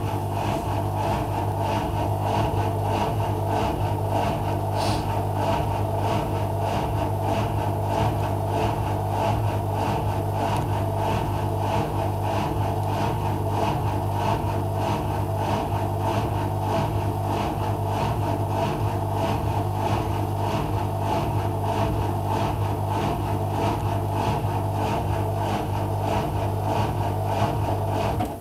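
Whirlpool AWM 1400 washing machine's drain pump running with a steady low hum during its quick final pump-out, stopping right at the end.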